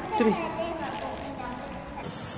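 A small child's voice: a short vocal sound falling in pitch about a quarter second in, followed by quieter voice sounds.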